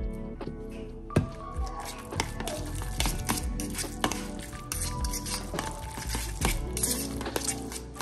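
Background music, with a metal fork repeatedly clinking and scraping against a bowl while shredded chicken is stirred, the clicks coming thick and fast from about a second in.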